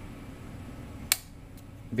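Low steady hum of the Whirlpool washer shifter's small drive motor running under power, with one sharp click about a second in, after which the hum drops.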